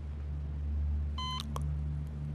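A single short electronic beep from a hospital patient monitor, a little over a second in, over a low steady hum.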